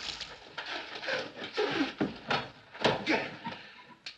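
Water poured from a pitcher splashing onto a man's head, then a man's whimpering, moaning cries several times.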